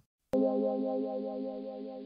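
A short synthesized musical sting: a held chord that comes in sharply about a third of a second in and slowly fades away.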